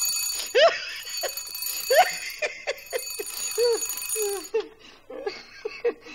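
An old corded desk telephone's bell ringing in two long rings with a short break between, stopping about halfway through, over bursts of a woman's laughter.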